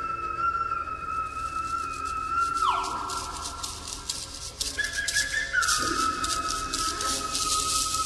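A high, pure whistle tone held on one pitch. About three seconds in it slides sharply down, then comes back on a higher note and settles on the first pitch again. A rapid rattling joins in during the second half.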